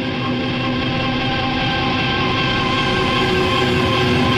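Post-industrial power-electronics music: a dense drone of many held tones over a wash of noise, steadily swelling louder.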